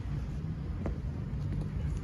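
Steady low rumble of outdoor background noise, with a faint click about a second in.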